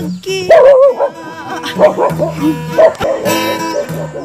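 Acoustic guitar playing, with a dog barking loudly several times over it, the loudest barks about half a second, two seconds and three seconds in.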